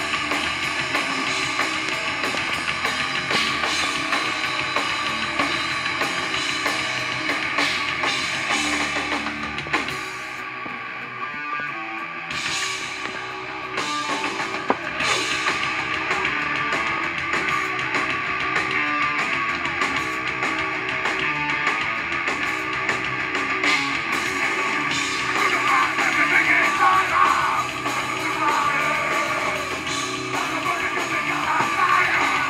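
Heavy metal band playing live: distorted electric guitar, bass and a drum kit with cymbals. The music thins and drops in level for a moment about ten seconds in, then comes back at full strength.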